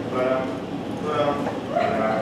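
A performer's voice imitating a dog: several short yips and whimpers, each a fraction of a second long.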